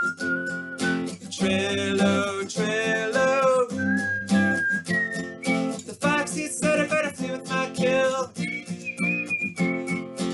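Acoustic guitar strummed in a steady rhythm, with a man's voice singing the folk melody over it, some notes held long.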